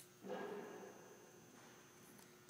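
Faint room noise with a thin, steady high-pitched tone running through it, after a short click at the very start.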